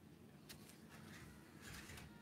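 Near silence: faint room tone, with a faint click about half a second in.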